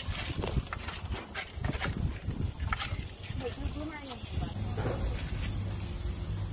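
Ostriches pecking feed from a hand-held bowl: an irregular run of sharp knocks, with people's voices in the background.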